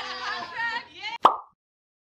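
Voices, then about a second in a single short 'plop' sound effect, the loudest thing here: a quick sweep in pitch that settles into a brief ringing tone. It is an editing transition effect.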